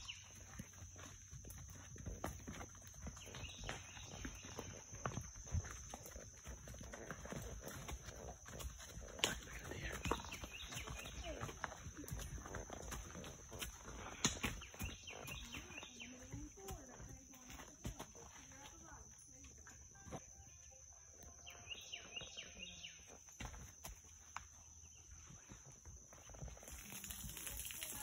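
Faint woodland trail sounds around a walking horse and its rider: scattered soft knocks and rustles, with a steady high hiss underneath.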